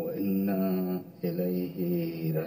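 A man's voice chanting in long, held notes that bend gently in pitch, with a short break about a second in.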